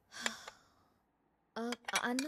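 A person's short, breathy sigh about a quarter second in, followed near the end by brief voiced sounds from a person.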